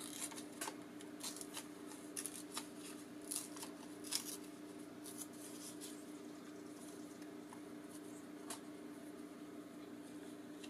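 Paper rustling and crinkling as small paper die cuts and scraps are handled: a quick run of crisp rustles and clicks in the first half, then quieter, with one more sharp rustle near the end.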